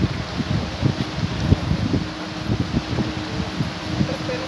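Wind buffeting the microphone in irregular gusts, over the steady rushing splash and faint hum of paddlewheel aerators churning a shrimp pond.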